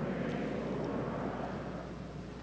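Congregation in a large church getting to its feet: a low, steady rumble of shuffling and movement that swells up and holds.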